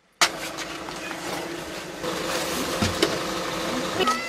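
Bus engine idling steadily, heard from inside the bus, with a couple of light knocks near the end.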